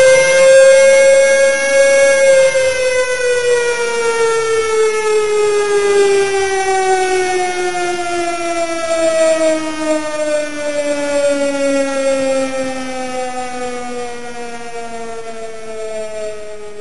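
Air-raid siren winding down: a single wail that peaks about a second in, then falls slowly in pitch and fades.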